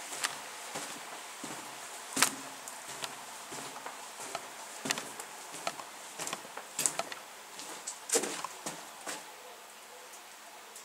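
Footsteps on the gravel- and twig-strewn floor of a small stone tunnel: irregular crunches and scuffs, with a sharper click about two seconds in and more close together toward the end.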